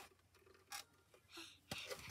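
Near silence: room tone with a couple of faint brief sounds and a sharp click near the end.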